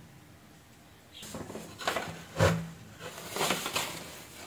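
Handling noise on a wooden work board: a few light knocks and rustles, starting about a second in.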